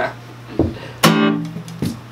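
Acoustic guitar: one strummed chord about a second in, ringing out and fading, with a couple of short low sounds on the strings around it, as a blues number comes to its end.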